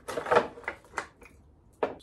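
A handful of knocks and clatters from one half of an outboard motor's side cowling being pulled free and handled, most of them in the first second and one more sharp knock near the end.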